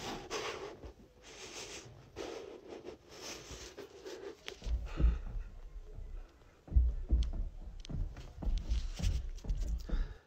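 Irregular low thuds and knocks of something moving across a house roof, heard from the room below, starting about halfway through. Before them, soft breathing close to the phone, about once a second.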